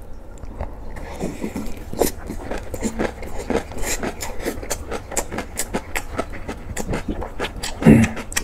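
Close-miked chewing of a large mouthful of rice and freshly made kimchi: quick wet crunches and clicks, several a second, with a short hum near the end.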